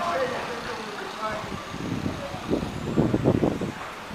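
Outdoor street ambience with faint voices of passers-by, then a loud, uneven low rumble for about a second near the end.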